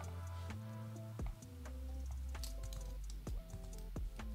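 Soft background music with sustained notes over a low bass, with a few sharp computer keyboard clicks.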